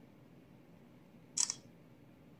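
Phone camera shutter click, one short double click about a second and a half in.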